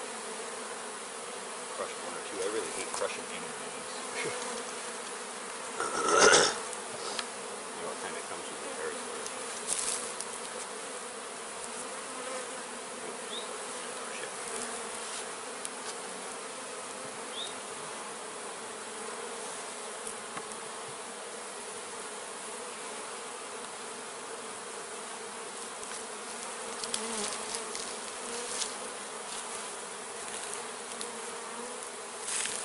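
A swarm of honey bees buzzing in a steady hum around a wooden hive box they have just been put into. A brief, louder noise comes about six seconds in.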